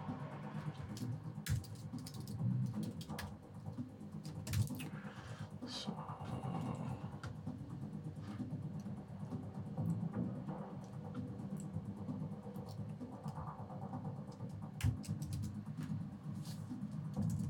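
Scattered computer keyboard keystrokes and clicks while code is being edited, over soft, steady background music.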